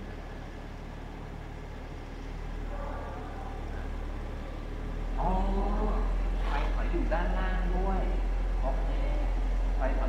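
Toyota GR Supra engine idling, heard at the exhaust as a steady low drone. It grows clearly louder about five seconds in as the microphone is brought close to the tailpipes.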